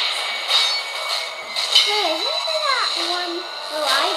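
Movie trailer soundtrack playing through speakers: a voice sliding up and down in pitch about halfway through, over a steady background score, with a few sharp clinks early on.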